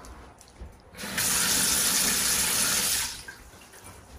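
Kitchen faucet running into a stainless steel sink: a steady hiss of water that starts about a second in and is shut off after about two seconds.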